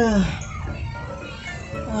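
A man groaning in discomfort, a long 'aduh' that falls in pitch at the start, with a second groan beginning at the end, over background music.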